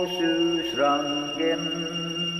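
A man's voice chanting in long held notes, sliding to a new pitch about a second in, over a steady low tone.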